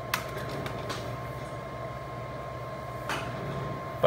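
Steady electrical hum from the repair bench with a thin, steady high-pitched whine over it, and a few faint clicks.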